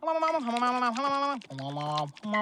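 A cartoon character's wordless vocalizing: a few held voice notes that step up and down in pitch with short breaks.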